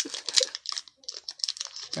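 Foil Pokémon booster pack wrapper crinkling in the fingers as it is worked open with difficulty: a string of small, sharp crackles with a brief lull about halfway.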